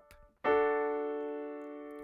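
Piano D major triad (D, F sharp, A) struck once about half a second in and left to ring, dying away slowly.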